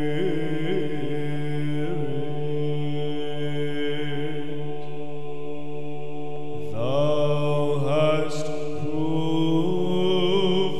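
Byzantine chant in English, a Doxastikon in the plagal first mode: an ornamented melody sung over a steady held drone (ison). A new phrase begins about two-thirds of the way through, sliding up in pitch.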